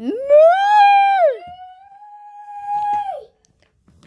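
A person's voice in a high falsetto making two long, drawn-out whiny cries. The first and louder one swoops up, holds, and drops about a second in. The second is quieter, holds steady, and falls away near the end.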